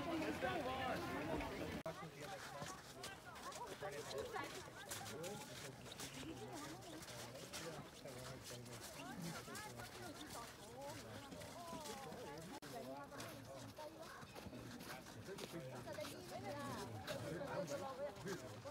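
Faint voices of people talking at a distance, with scattered small clicks.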